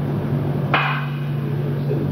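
One sharp knock about three-quarters of a second in, over a steady low hum.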